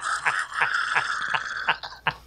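A man laughing hard: a breathy, high-pitched laugh in quick pulses, about three a second.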